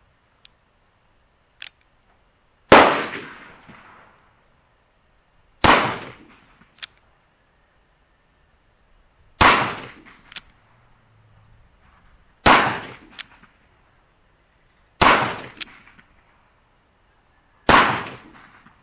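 An Uberti-made 1849 Colt Pocket revolver, a .31 caliber cap-and-ball black powder gun, fired six times, about every three seconds. Each shot dies away in a short fading tail. Between shots there is a single small click, most often within a second after the shot, as the hammer is cocked for the next one.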